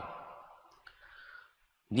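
A quiet pause in a man's speech: the last word fades away, then a single faint click about a second in, followed by a short soft hiss.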